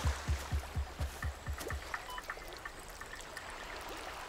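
Faint steady rush of a river, with a run of low thuds about four a second that fade out over the first two seconds.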